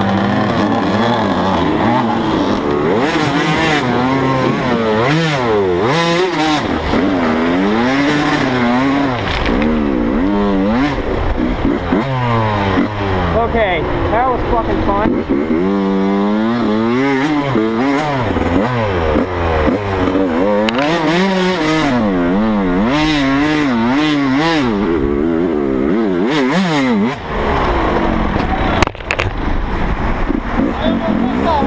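Dirt bike engine heard close up from the rider's helmet, revving up and down over and over as the throttle is worked, its pitch rising and falling every second or two.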